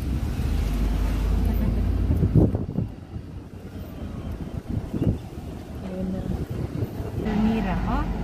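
A car driving, heard from inside the cabin: a low engine and road rumble, heavier for the first three seconds, easing off, then building again near the end.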